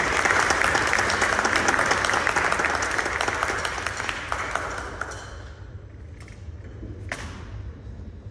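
Audience applauding after a piano piece, the clapping fading away after about five seconds. Near the end there is a single knock.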